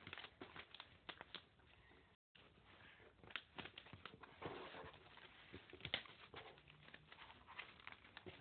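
Paper being folded and creased by hand: faint, irregular rustling and crinkling with small crackles. The audio drops out briefly about two seconds in.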